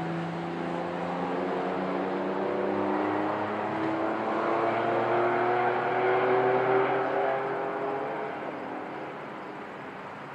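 Go-kart engines accelerating on the track, the pitch climbing steadily as they get louder, peaking about seven seconds in, then fading away.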